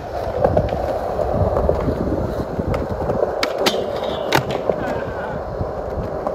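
Skateboard wheels rolling steadily over smooth concrete, with a few sharp clicks a little past the middle.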